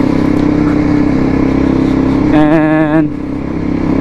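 Sport motorcycle engine running steadily under way. Past halfway there is a short wavering tone lasting about half a second, and then the engine eases off.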